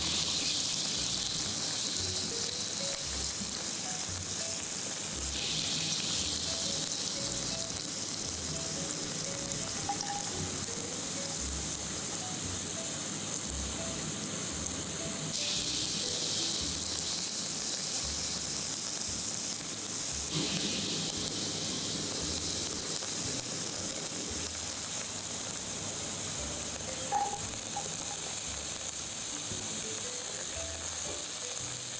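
Onion, garlic and ginger sizzling in hot oil in a nonstick wok as they are stir-fried with a silicone spatula: a steady frying hiss.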